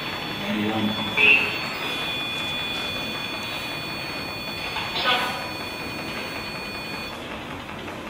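A steady high-pitched electronic tone, made of several pitches at once, that cuts off about seven seconds in. Faint murmured voices sound now and then underneath it.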